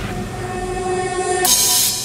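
Electro house remix in a breakdown: the bass and beat drop out, leaving a held synth chord of a few steady tones. Near the end a burst of bright noise comes in.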